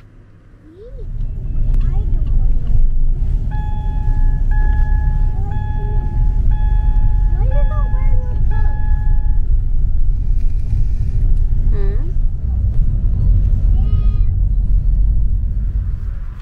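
Car cabin rumble of a moving car, strong and steady, starting about a second in. Partway through, a string of even electronic beeps, each under a second, sounds for several seconds.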